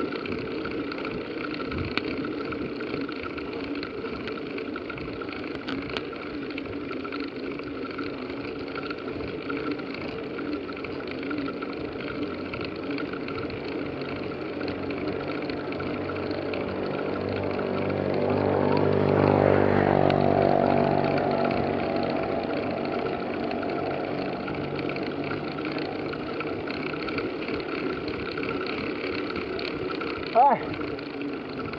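Steady running noise of a bicycle ridden on a paved road. A motor vehicle's engine passes, building from about halfway through, loudest a little after, then fading.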